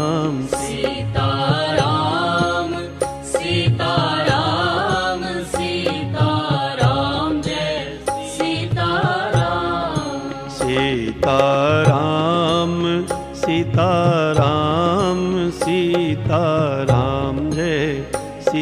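Hindu devotional bhajan music: a wavering melody line with vibrato, sung or played in phrases, over a steady accompaniment.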